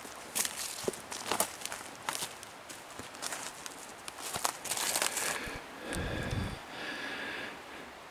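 Footsteps on dry leaf litter and twigs, an irregular run of short crackling steps, with a dull low bump about six seconds in.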